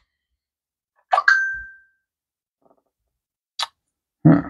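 Smartphone notification chime: a short sudden onset ending in a single ringing tone that fades out in under a second. It is a home security camera alert, signalling that someone is moving around outside.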